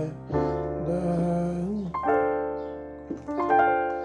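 Nord Stage keyboard in a piano voice playing sustained jazz-style chords, moving from a C minor 9 voicing to a D minor 7(11). A new chord strikes about two seconds in and a few single notes follow near the end.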